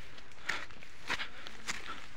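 Footsteps on dry grass and fallen pine needles, three steps a little over half a second apart, walking up a slope.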